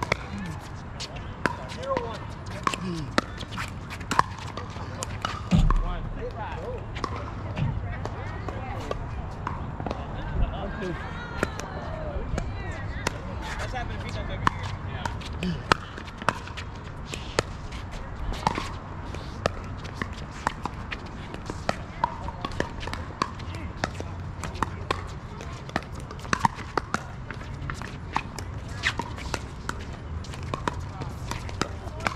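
Pickleball paddles hitting a hard plastic ball, sharp pops coming irregularly throughout during rallies, with a louder low thump about five and a half seconds in.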